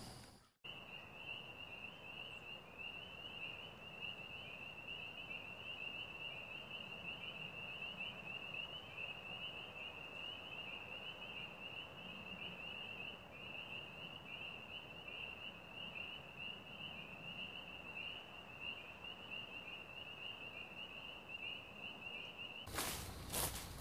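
Outdoor nature ambience. A continuous high-pitched, rapidly pulsing animal trill, like an insect or frog calling, starts about half a second in after a brief silence and runs on steadily over a soft background hiss.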